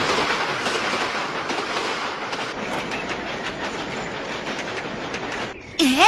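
A passenger train running on the rails, its wheels clacking regularly over the rail joints, slowly fading. Near the end a short, loud rising sweep cuts in.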